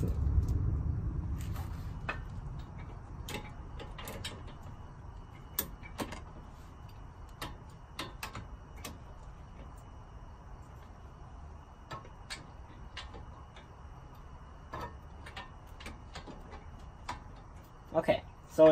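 Irregular light metallic clicks and knocks from a breaker bar, extension and socket being worked on the lower strut-mounting bolt of a Honda Civic front suspension to break it loose. A low rumble fades over the first couple of seconds.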